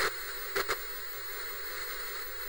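Television static sound effect: a steady hiss of white noise, with two quick crackles a little over half a second in.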